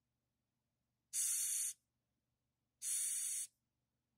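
Madagascar hissing cockroach giving two short hisses about a second apart as a finger prods it: its defensive disturbance hiss, air forced out through its breathing pores.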